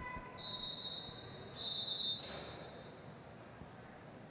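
Referee's whistle blown twice in a large hall, a one-second blast followed by a shorter one, as an official timeout is called.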